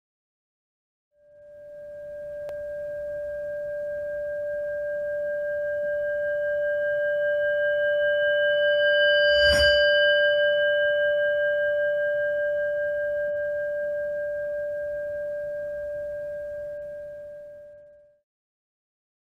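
Intro sound design: a sustained, bell-like ringing tone that swells up slowly, peaks with a sharp strike about halfway through, then slowly fades away.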